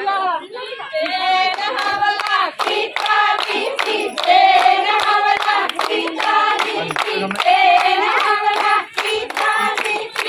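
A group of women singing Punjabi boliyan (folk couplets) together, with steady rhythmic hand-clapping to the beat. The clapping joins in about a second and a half in.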